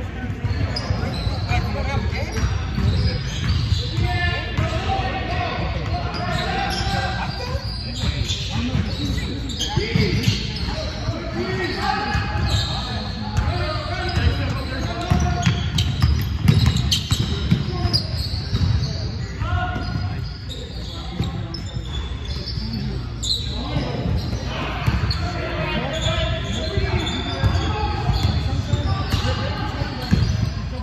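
A basketball being dribbled and bouncing on a hardwood gym floor during play, the thuds ringing in the large hall, with players' voices calling out around it.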